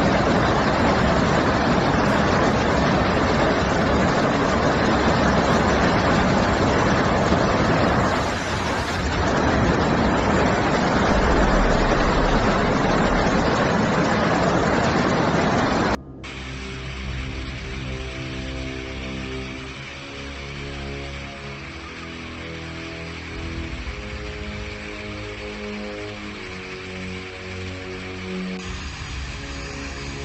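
Loud, steady rushing of a fast floodwater torrent. About halfway through it cuts off abruptly and gives way to quieter background music with long held notes.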